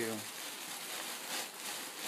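Plastic bag crinkling and loose bark potting mix rustling as it is stirred by hand, a steady rustle with faint crackles.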